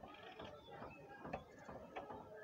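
Faint, irregular clicks and small knocks from a hand tool being worked at a spare tyre.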